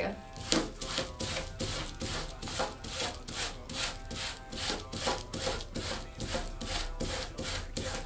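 Sandpaper rubbed fast back and forth over denim jeans, rasping strokes about three to four a second, wearing the fabric down to distress it.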